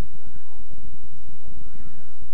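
Faint voices of people talking in a room over a loud, steady low rumble with crackle; one voice rises and falls near the end.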